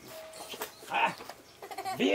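A short voice-like sound from a person about a second in, over faint outdoor background.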